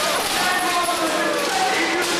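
A small crowd of spectators shouting over each other in a large echoing hall, with a thud of an impact on the floor.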